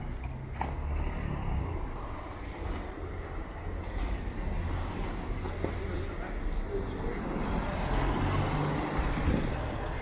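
Street traffic: a motor vehicle runs close by with a steady low rumble, growing louder toward the end, with people's voices in the background.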